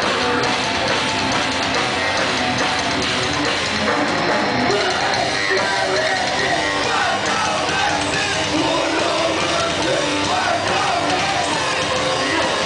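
Metalcore band playing live: electric guitar and drum kit in a loud, dense wall of sound.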